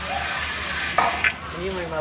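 Zip-line pulley rolling along a steel cable under a rider's weight, a steady hiss, with a sharp knock about a second in.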